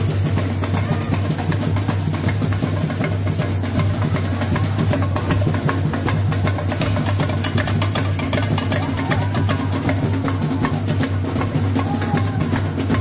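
Samba bateria percussion playing a steady driving rhythm: deep surdo bass drums under fast, dense strikes of snare drums and stick-played tamborins.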